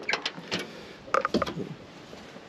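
A few clicks and knocks as the rear door of a 1973 Pontiac ambulance is unlatched and swung open.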